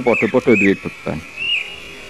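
A man speaking into a microphone: a short phrase, then a pause starting about a second in.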